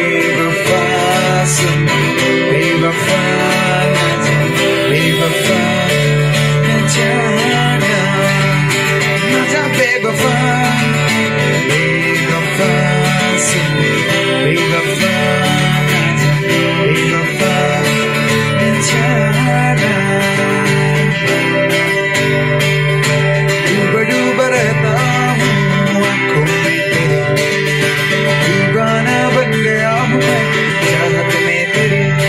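Live band of acoustic guitars playing a song together, strummed and picked, amplified through stage speakers. The music carries on at an even level.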